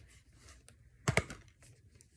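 Plastic DVD case being handled and turned over: a few light clicks and taps, the loudest a short cluster about a second in.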